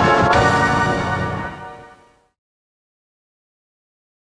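Logo jingle music ending on a held chord that fades out over about two seconds, leaving silence.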